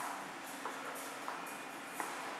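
Steady background hum and hiss in a car cabin, with a couple of faint soft ticks.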